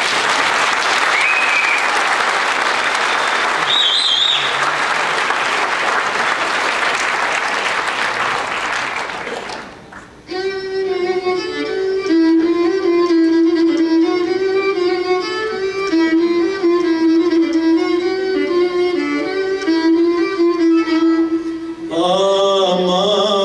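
Audience applauding, with a couple of short whistles, for about ten seconds. The applause dies away and an ensemble of male chanters begins a Byzantine chant, a held, slowly stepping note with the other voices layered over it.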